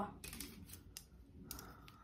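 A few faint, separate clicks of plastic rulers and a protractor being handled.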